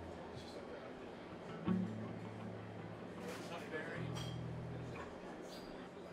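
Amplified guitar sounding two held low notes, each about a second long, with a sharp knock as the first begins. Scattered small clicks and faint voices are in the room.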